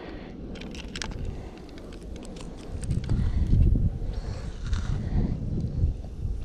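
Wind buffeting the microphone as a low rumble that swells about halfway through, with a few light clicks of a fish being handled onto a hand-held scale.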